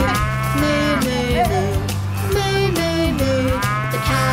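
Cartoon cow mooing 'moo moo moo' in time with a children's farm song, over bouncy backing music with a steady bass.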